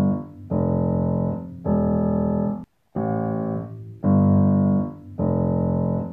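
Piano chords held about a second each over a falling lament bass line. A four-chord phrase ends with a brief break about two and a half seconds in, then starts over.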